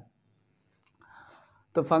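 A pause in a man's lecture: near-quiet room tone with one short, faint breath-like hiss about a second in, then his voice resumes near the end.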